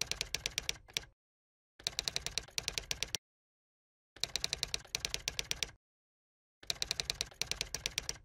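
Typewriter typing sound effect: quick runs of key clicks, about ten a second, each run lasting about a second and a half, with short silent pauses between the runs.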